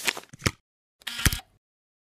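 Swoosh-and-hit sound effects of an animated logo reveal: two short bursts about a second apart, each ending in a sharp hit.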